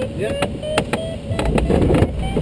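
Glider cockpit audio variometer sounding short pitched beeps that step higher, over airflow noise that grows louder in the second half, with several sharp clicks.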